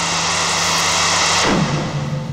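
Horror-style sound-effect whoosh: a loud rushing noise builds over a low droning music tone, then about a second and a half in it drops away into a steep falling pitch sweep.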